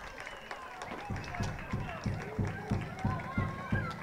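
Distant voices shouting and calling across an open-air football pitch. From about a second in, a regular low thumping comes in at about three beats a second.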